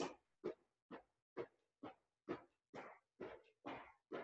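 Faint, rhythmic sounds of a person doing lateral pogo jumps side to side, bouncing off the ankles on a rubber gym floor: one short sound per jump, about two a second.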